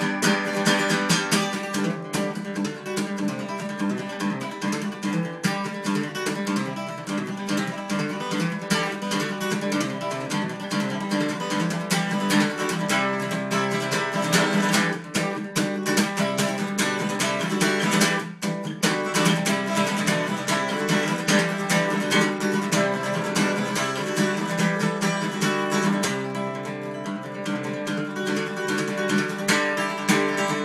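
Jumbo-bodied steel-string acoustic guitar played solo: a busy instrumental with a steady stream of picked notes and strums, with two short breaks about 15 and 18 seconds in.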